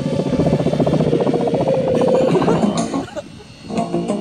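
Radio-controlled scale Airwolf helicopter flying overhead: fast rotor chop with a steady whine, fading away about three seconds in. Guitar music comes in near the end.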